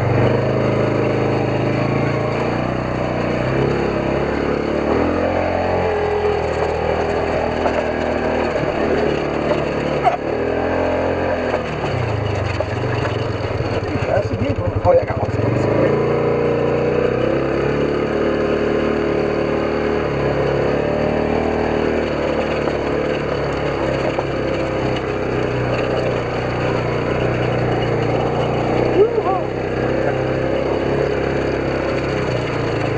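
Polaris side-by-side's engine running under way, its pitch rising and falling with the throttle, with a few sharp knocks along the way.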